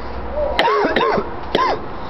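A person yelling: three short, loud shouts, each jumping sharply up in pitch and dropping back, the first two close together about half a second in and the third near the end.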